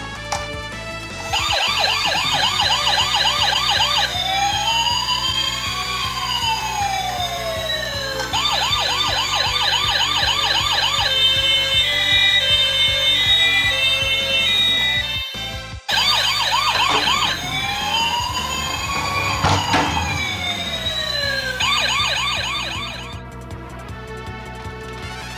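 Electronic siren from a battery-powered toy police SUV, cycling through a fast yelp, a slow rising-and-falling wail and a two-tone hi-lo. After a short break about two-thirds of the way in, the cycle starts again. Background music plays underneath.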